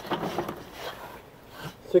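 Quiet, low speech with a few faint handling clicks, and a man's voice starting a word at the very end.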